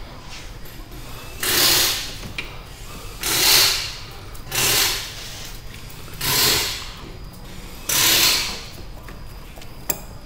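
Five heavy breaths into a head-mounted camera microphone, about one every one and a half seconds, each a short rush of air that starts sharply and fades.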